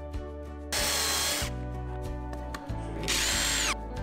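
Compact trim router cutting a panel in two short bursts, each with a high whine; the second falls in pitch as it stops. Background music runs underneath.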